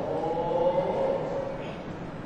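A ceremonial chant: one voice holding a long, drawn-out note that fades out about a second and a half in, ringing in a large hall.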